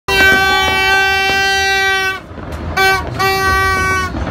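A horn sounding at a steady pitch: one long blast of about two seconds, then a short blast and another longer one. A few sharp pops are heard behind the first blast.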